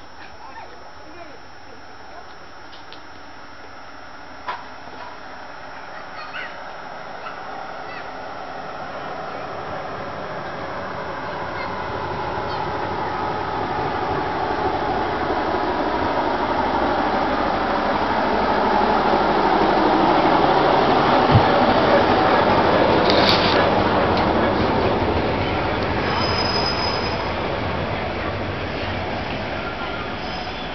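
Small park-railway train, a locomotive hauling open passenger cars, approaching and running past: the rumble of wheels on rails grows steadily louder, is loudest a little past the middle and eases off toward the end. Short high-pitched squeals cut in about two-thirds of the way through and again near the end.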